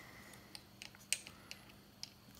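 A few faint, light clicks and handling noises from fingers pressing a small part onto a quadcopter frame, the sharpest click just past the middle.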